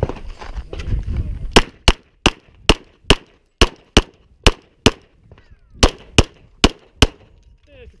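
Semi-automatic pistol fired in a fast string of thirteen shots, about two to three a second, with a pause of about a second after the ninth shot. The first shot comes about a second and a half in, after a low rustle of movement.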